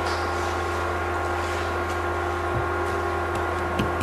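Steady electrical hum in the room, low and even, with a few faint clicks in the second half.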